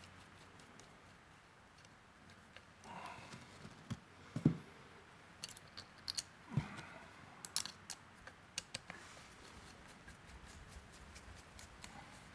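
Scattered small clicks and taps of a screwdriver and metal screws on the burr housing of a hand coffee grinder as the four burr-carrier screws are loosened, with two duller knocks about four and a half and six and a half seconds in.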